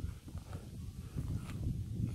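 Footsteps of a hiker climbing stone stairs: irregular soft thuds of boots on rock, with a short sharper click now and then.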